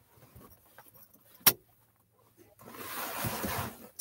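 Handling noises as a board is fitted against a vehicle's rear window to block the sun: a single sharp knock about a second and a half in, then about a second and a half of rustling and rubbing.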